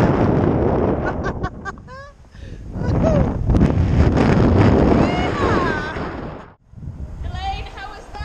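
Wind rushing hard over a rope-mounted camera's microphone during the fall and arc of a 40 m rope swing, in two loud surges. A rider's high shrieks and yelps ring out over it. The sound cuts out suddenly for a moment near the end, then her voice calls out again.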